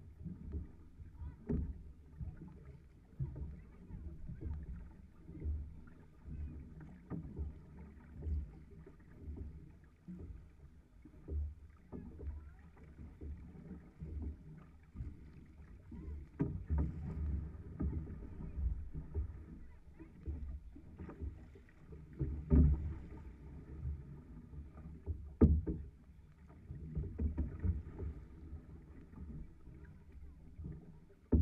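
Six-person outrigger canoe under way at sea: paddle strokes and water rushing along the hull in uneven surges about once a second, with low wind noise on the microphone. One sharp knock comes late on.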